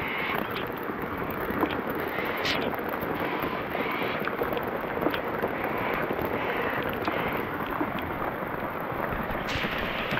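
Heavy rain pouring down on a river and a small boat: a steady, dense hiss, with scattered sharp taps of drops striking close by.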